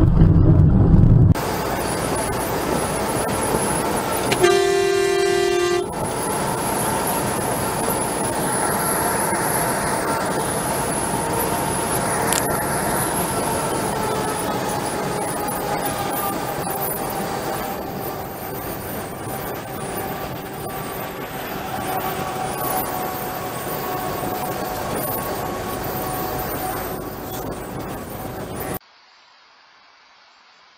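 Steady road and engine noise from inside a moving vehicle on a highway, with one vehicle horn blast lasting about a second and a half about five seconds in. A loud low rumble fills the first second, and the sound cuts off suddenly just before the end.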